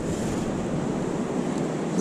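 Steady wash of ocean surf with wind noise on the microphone.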